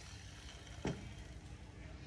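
Quiet handling noise with a single sharp click a little under a second in, over faint steady room noise; the drill's motor is not running.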